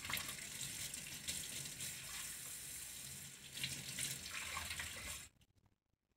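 Kitchen faucet running into a stainless steel sink as hands rinse a denture under the stream; the steady water stops abruptly about five seconds in.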